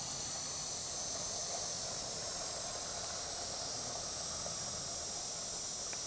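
Steady chorus of insects, a continuous high-pitched shrill buzz with faint rapid pulsing, over soft outdoor background hiss; no owl call is heard.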